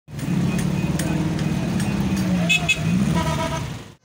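Busy street traffic: motorcycle and car engines running, one engine's pitch dipping and then climbing again near the end, with a short horn toot just after three seconds. The sound cuts off suddenly at the end.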